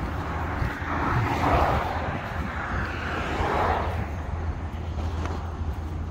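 Road traffic passing, the noise swelling twice, over a steady low rumble.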